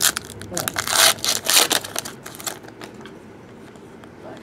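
Foil trading-card pack wrapper being torn open and crinkled, a run of short crackly rips and rustles that dies down to quieter handling after about two and a half seconds.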